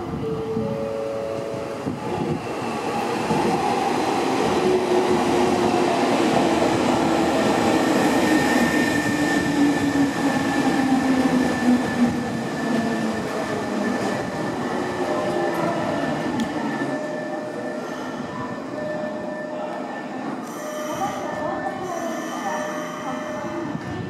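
Nankai 6300-series electric commuter train pulling into a station and braking to a stop: wheels and running gear rumble as the cars pass close by, loudest midway, under a whine that falls in pitch as the train slows. Toward the end the rumble eases and steady high tones remain as it comes to rest.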